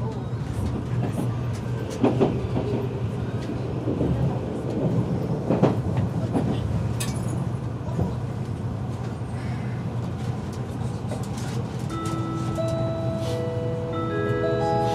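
Cabin running noise of an Odakyu EXE 30000 series Romancecar electric train at speed: a steady low hum with occasional sharp clicks from the wheels on the track. Near the end the onboard chime melody starts, a few sustained notes that lead into the conductor's announcement.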